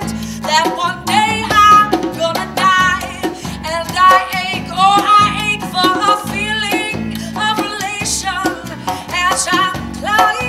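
A live acoustic band: a woman singing over a strummed acoustic guitar, with a djembe played by hand keeping the beat.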